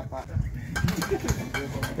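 Faint background voices over a low rumble, with a few light clicks in the second half.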